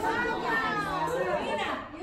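People talking in high-pitched voices.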